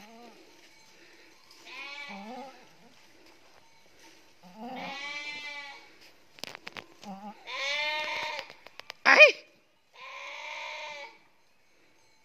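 A ewe in labour bleating four times, each call about a second long and a couple of seconds apart, as her lamb is being born. About nine seconds in comes one short, much louder call that rises and falls in pitch.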